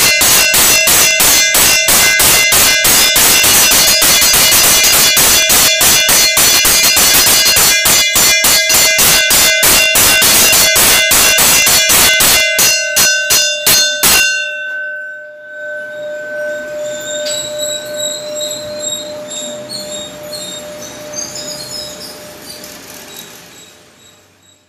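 Temple bell rung rapidly during the aarti, several clanging strikes a second, which spread out and stop about fourteen seconds in. Its tone then rings on and slowly fades.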